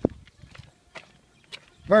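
A single sharp click right at the start, then a few faint ticks, with a man starting to speak at the very end.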